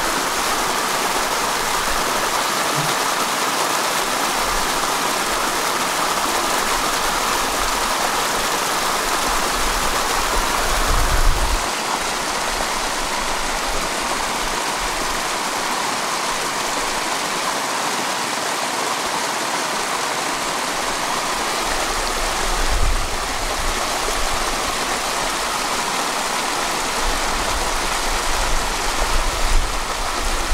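Steady rushing noise of running water, with brief low rumbles about eleven and twenty-three seconds in.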